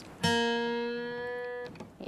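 A single note plucked once on an acoustic guitar, the B-flat at the third fret of the third string. It rings for about a second and a half, holding steady in pitch as it fades.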